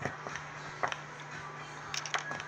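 A small chisel scraping and picking at a chalky plaster dig block: a few short, faint scratches about a second apart, over a steady low hum.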